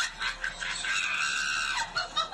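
A cat crying out while its belly is handled: one long, high-pitched cry of about a second in the middle, with shorter cries around it.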